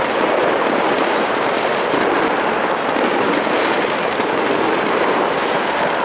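Loud, steady din of a crowd with a dense crackle of firecrackers running through it.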